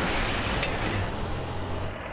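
A taxi car passing close by and driving off, its road noise easing after about a second, over steady street traffic.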